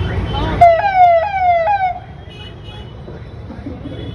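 A vehicle's electronic siren-style horn sounds three quick falling wails over about a second, with road traffic rumbling underneath.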